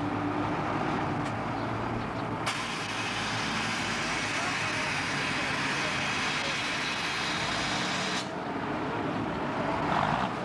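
A motor vehicle engine running steadily, with a high hiss that comes in about two and a half seconds in and stops abruptly about eight seconds in.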